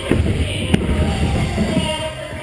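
A BMX rider and his bike crashing onto a plywood ramp: heavy thuds and clatter, with one sharp crack about three quarters of a second in, over background music.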